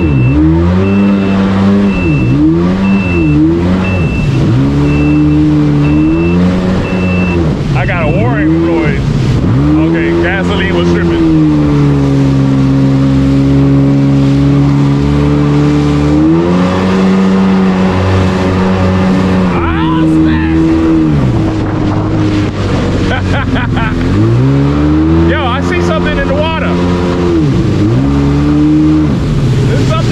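Jet ski engine running under way, its pitch rising and falling repeatedly as the throttle is opened and eased off, with spells of steady cruising. A high beep repeats about twice a second for roughly the first seven seconds, over the hiss of water spray.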